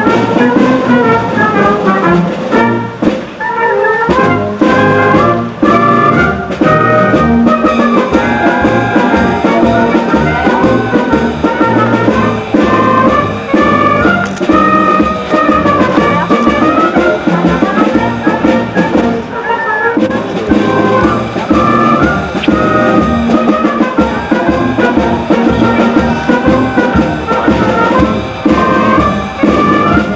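Wind band playing a piece live, with clarinets, saxophone, brass and a sousaphone on a steady bass beat.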